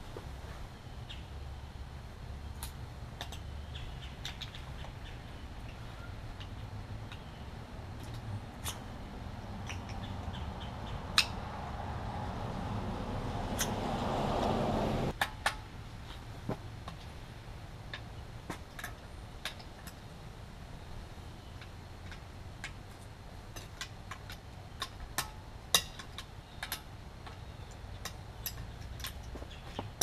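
Scattered short metallic clicks and taps of a screwdriver prying off lug-nut covers and a lug wrench working the lug nuts on a car wheel, over a low steady hum. A rushing noise swells over several seconds and cuts off suddenly about halfway through.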